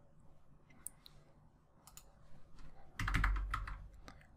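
Computer keyboard and mouse clicks: a few faint scattered clicks, then a louder cluster of keystrokes with a dull knock about three seconds in.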